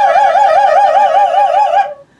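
Operatic soprano holding one long high note with wide vibrato over a clarinet's steady note just below it. Both end together near the end, closing the phrase.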